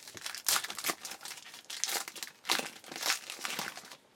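A foil trading-card pack being torn open and its wrapper crinkled in the hands, in a string of irregular rustling bursts.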